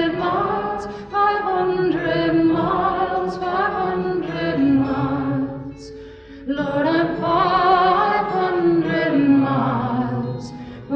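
Background music: a song with held, layered singing voices, dipping briefly about six seconds in.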